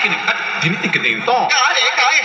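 A voice over large PA loudspeakers in a break in the DJ mix, with no bass beat under it.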